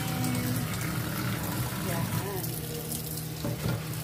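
Filtered water running in a thin steady stream from a newly fitted water filter's outlet into a stainless steel sink, flushing the new cartridges.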